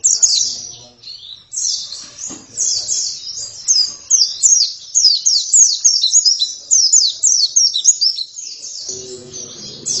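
White-eye (pleci) in full song: a fast, high-pitched warble of quick down-slurred notes. A short opening burst is followed by a brief pause about a second in, then a long, dense, unbroken run.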